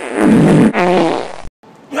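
A man's loud, raw scream with a rough, rasping edge, cut off suddenly about one and a half seconds in.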